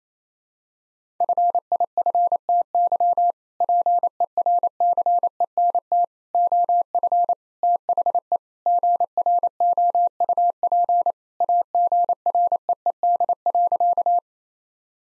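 Morse code sent at 28 words per minute as a single steady tone keyed on and off in dots and dashes, with short gaps between words, spelling out the sentence "50% of the group agreed" for the second time. It starts about a second in.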